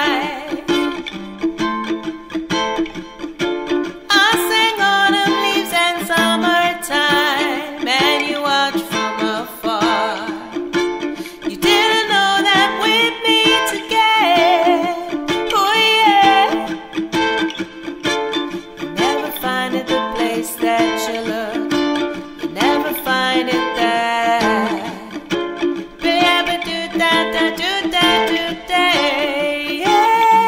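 Ukulele strummed in a steady reggae rhythm, with a woman singing over it.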